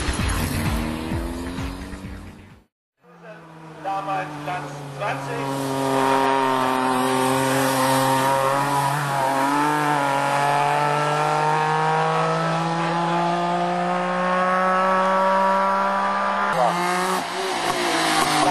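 Racing touring car's engine held at high revs under load on a hillclimb run, its pitch climbing slowly for over ten seconds. There is a brief wobble in the note near the middle and a change in revs near the end. It begins after a silent cut about three seconds in.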